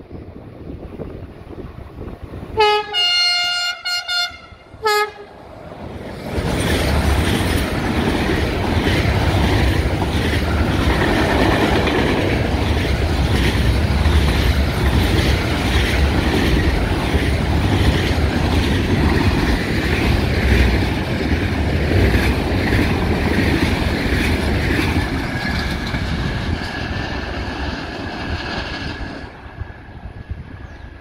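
Horn of a Class 5600 electric locomotive sounding several short blasts about three seconds in. A long container freight train then passes close by for over twenty seconds: a loud rumble of wagon wheels on the rails, clicking at a regular rhythm, with a thin steady whine above it. It dies away just before the end.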